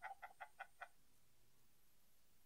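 A person laughing: a run of short, evenly spaced bursts that fade out within the first second, then near silence.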